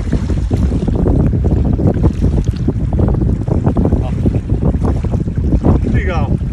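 Wind buffeting the microphone in a loud, steady low rumble, with water splashing and lapping at the rocky shoreline.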